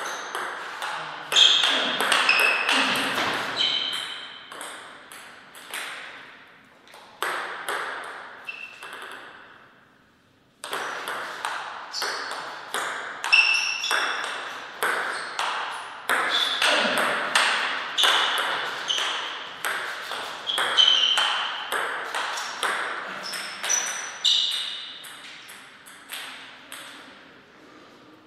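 Table tennis ball clicking back and forth off the rubber-faced paddles and the table in two rapid rallies, each hit ringing briefly in the hall. The first rally stops about nine seconds in, and the second begins just under eleven seconds in. Short squeaks come between the hits.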